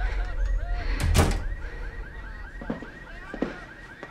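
A picture frame knocking against the wall as the room shakes, over a low rumble that fades away. There is one hard knock about a second in and lighter knocks later, with a faint repeating high warble behind.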